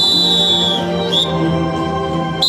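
A shrill whistle blast held for about a second, its pitch sagging at the end, then a short second chirp, over orchestral music.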